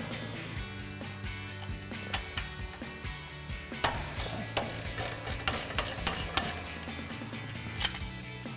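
Ratcheting wrench clicking as it backs off the 18 mm nut on an upper control arm ball joint, in scattered sharp clicks that come thickest in the second half. Background music plays underneath.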